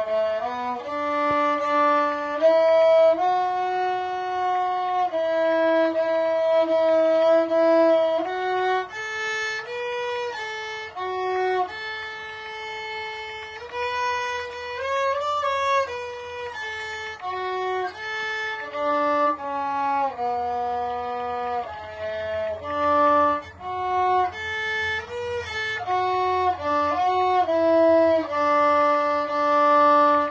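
Background music: a violin playing a slow melody of held notes, with a faint low accompaniment coming in about halfway through.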